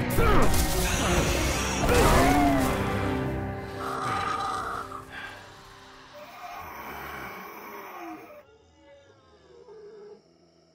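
Animated-film soundtrack: music under a dense mix of action sound effects with gliding cries in the first few seconds, then the music fades down to quiet held tones.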